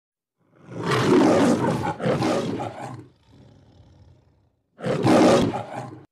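A big cat's roar, like a lion-roar sound effect: two long loud roars run together, then a quieter rumbling growl, and another loud roar about five seconds in that cuts off suddenly.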